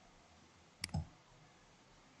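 A computer mouse clicking: a sharp click about a second in, followed at once by a duller second knock, like a button press and release, over faint room hiss.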